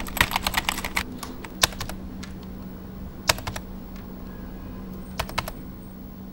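Computer keyboard typing in short bursts of key clicks: a quick flurry in the first second, then scattered groups of a few clicks, over a steady low hum.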